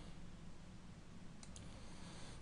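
Faint room tone with a soft computer mouse click, two quick ticks close together about one and a half seconds in.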